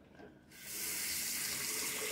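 A steady rushing hiss, like running water, starts abruptly about half a second in after a moment of near silence.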